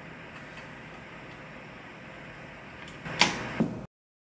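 Steady hiss of television static, then two sharp clunks about half a second apart near the end, after which the sound cuts off abruptly.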